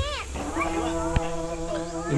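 A short animal call at the start, arching and then falling in pitch, followed by a steady insect drone.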